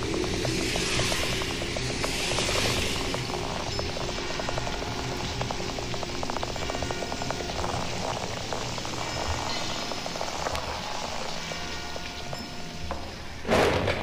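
Electronic music from a live-recorded goa trance vinyl DJ mix: a steady hiss over low bass and fast fine ticks. A sudden loud burst of sound comes near the end.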